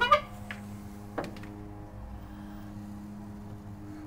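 Steady, unchanging machine hum, with a single sharp click about a second in.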